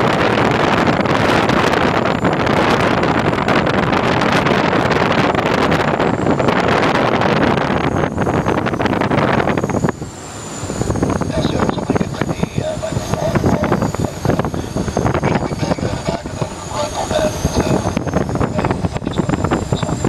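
Air rushing past a glider's cockpit in flight, a loud steady rush of wind. About halfway through it drops off suddenly, then comes back thinner and more uneven, with a faint high whistle.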